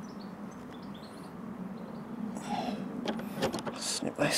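Hands handling small tools and materials at a work surface: rustling, scraping and a few sharp clicks starting about halfway through, over a steady low hum with faint high chirps in the background.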